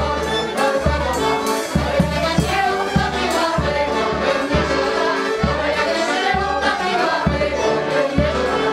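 Polish village folk band playing dance music: violins and accordion carry the melody over a steady bass-drum beat, with several people singing along.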